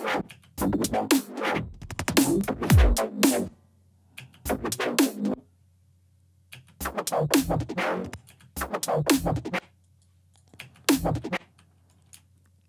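Chopped synthesized neuro bass samples playing back in a stop-start pattern: bursts of bass with falling pitch sweeps, broken by short silences.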